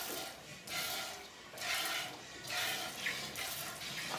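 Cow being milked by hand: streams of milk squirting into a metal pot, a hissing squirt roughly every second as the teats are squeezed in turn.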